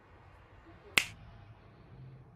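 A single sharp finger snap about a second in, marking the bookcase being cleared in one go.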